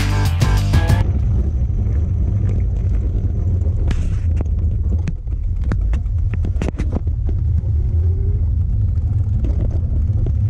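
Background music that stops about a second in, then deep, steady wind noise on the camera microphone of a moving recumbent trike, with scattered sharp clicks and knocks from the trike rattling over the rough road.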